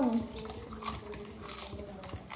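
A Doritos tortilla chip being chewed: a few soft crunches over a faint steady hum.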